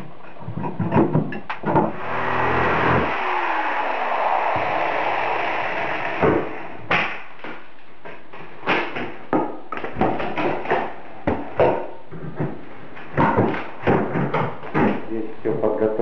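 Demolition with a flat pry bar against wood framing and trim: a string of sharp knocks and cracks. About two seconds in there is a longer scraping, tearing noise that lasts a few seconds.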